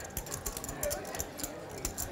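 Clay poker chips clicking together in a quick, irregular run of small sharp clicks, the sound of a player shuffling or riffling chips by hand.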